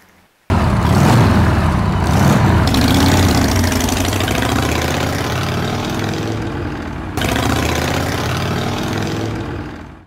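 A motorcycle engine revving and pulling away, its pitch rising and falling. It cuts in suddenly about half a second in and drops away near the end.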